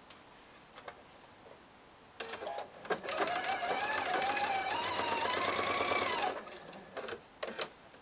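Electric sewing machine stitching through cotton fabric for about three seconds, with a rapid even needle rhythm and a motor whine that rises in pitch as it speeds up, then stops. A few clicks follow shortly after.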